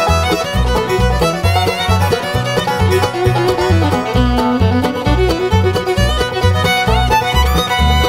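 Instrumental break in a bluegrass song: a fiddle plays the lead over banjo and guitar, with bass notes on a steady beat of about two a second.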